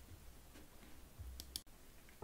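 Near silence with a faint low room hum, broken by a few quick faint clicks about one and a half seconds in.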